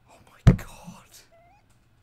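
A sudden loud thump about half a second in, followed by a breathy noise that fades over about half a second, then a faint short high note.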